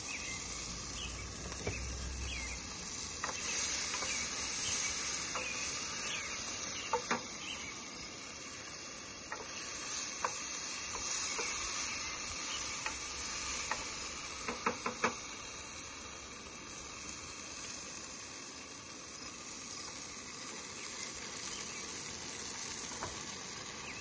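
Tomato sauce sizzling in a frying pan on a camp stove, with a wooden spoon scraping and knocking against the pan as it is stirred, in a few clusters of clicks.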